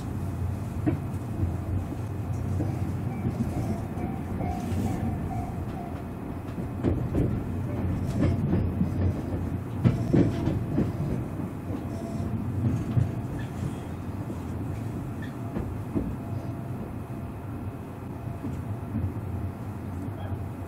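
Tobu 500 series Revaty electric train running, heard inside the passenger car: a steady low rumble of wheels on the track with a few short clicks over rail joints.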